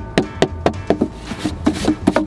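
A hard plastic food tray being rapped over and over to shake crumbs off it: sharp knocks, about four a second.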